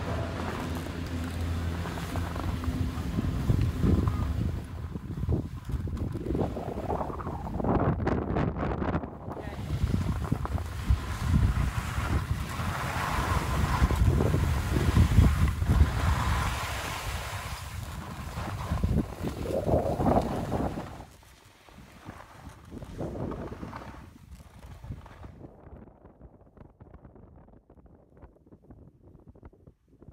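A gondola lift terminal's machinery hums steadily for the first couple of seconds. Gusty wind then rumbles on the microphone, fading away about 21 seconds in.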